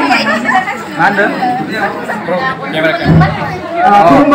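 Women's voices chattering in a lively exchange, in a large room. There is a low thump about three seconds in.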